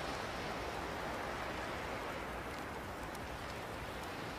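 Steady, soft outdoor background ambience: an even noise with no speech or music and no distinct events.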